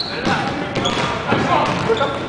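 A basketball bouncing on a hardwood court a few times, under players' shouts.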